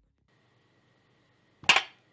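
Near silence, then a single short, sharp crack near the end that dies away almost at once.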